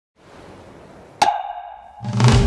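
A faint hiss, then a single sharp percussive strike about a second in that rings on as a clear pitched tone and fades away.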